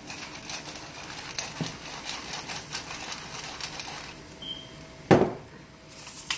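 Pepper mill being twisted over the pot, a rapid run of small gritty clicks for about four seconds. One loud sharp knock about five seconds in.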